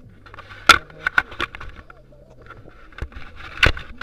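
Handling noise on a body-mounted action camera: rubbing, with several sharp knocks on the housing or mount, the loudest under a second in and again near the end.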